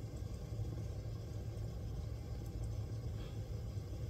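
A steady low mechanical hum, even throughout, with nothing else standing out.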